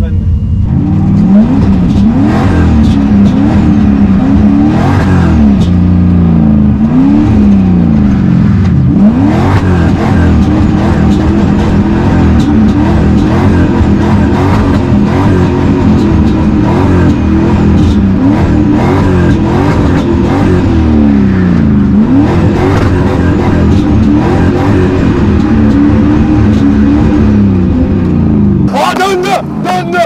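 Drift car's engine heard from inside the cabin, revving up and down over and over as the car is thrown through slides, its pitch swinging every second or two.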